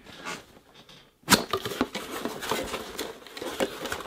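A small cardboard mailer box being torn open by hand: a sharp snap about a second in, then a continuous crackling rustle of cardboard flaps and bubble wrap around a boxed figure.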